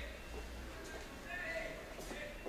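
Faint, distant voices over a low steady hum.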